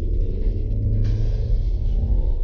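Nissan X-Trail's 2.5-litre four-cylinder petrol engine pulling hard through its CVT from a standstill, heard from inside the cabin, held at a steady pitch as the car gathers speed, over a low rumble from the tyres on snowy slush. A hiss joins about a second in.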